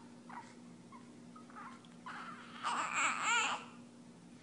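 Newborn baby fussing with short whimpers, breaking into a louder, wavering cry about two-thirds of the way through.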